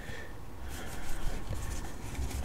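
Pokémon trading cards sliding and rustling against one another in the hands as a pulled pack is fanned out: soft, scattered papery scraping.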